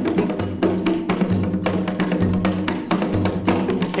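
Recorded voodoo ritual drumming: several interlocking drum rhythms layered on top of one another, dense and rapid strikes throughout, over a steady low tone.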